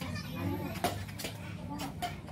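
Background voices and children playing, with two light clicks about a second apart from badminton rackets striking a nylon shuttlecock.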